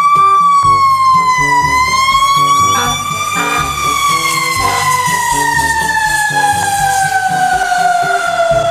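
Fire truck siren wailing: one long pitched tone that swells and dips, then falls slowly and steadily through the second half.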